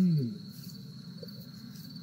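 Crickets chirping in a steady high trill, with a voice finishing a phrase just at the start.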